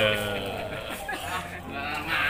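A man's drawn-out voice trailing off at the start, then quieter background voices.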